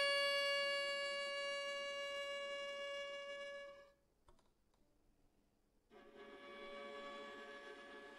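Solo viola holding a single high note that fades away and stops about four seconds in. After about two seconds of near silence with one faint click, another soft sustained note begins.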